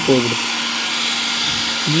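Handheld electric hair dryer running steadily: an even fan hiss with a low motor hum. It is blowing hot air onto the inside of a dented car door panel to soften the metal so the dent can be pushed out.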